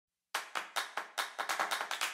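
Handclaps in a rhythm, about five a second, starting a moment in and growing quicker and less even after about a second and a half: the percussion opening an electronic intro track.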